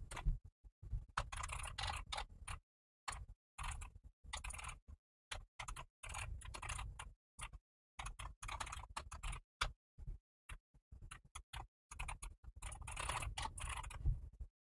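Typing on a computer keyboard: quick runs of keystrokes broken by short pauses of dead silence.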